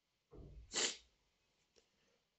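A person sneezing once, a short rough lead-in followed by a sharp, loud burst about three quarters of a second in.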